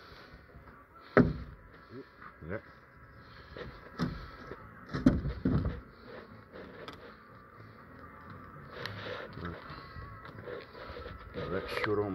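Asbestos-cement wall sheet being levered away from its timber frame: creaking and scraping, with sharp knocks about a second in and again around four to six seconds in.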